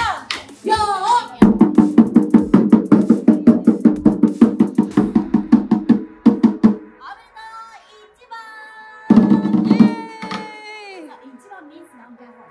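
Taiko drum struck rapidly with two wooden sticks in a fast, even roll lasting about five seconds, then a shorter burst of hits a couple of seconds later.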